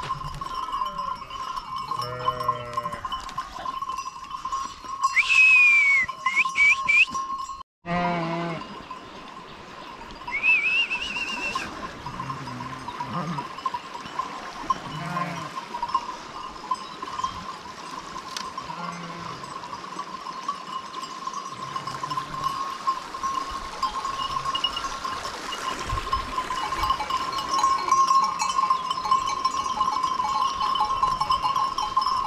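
A moving flock of sheep: livestock bells ringing steadily, with sheep bleating now and then, loudest at about five to seven seconds in and again around eleven seconds.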